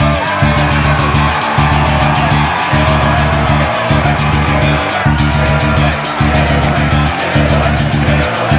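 Rock music with electric guitar and bass, playing a heavy riff that repeats about once a second under a wavering melodic line.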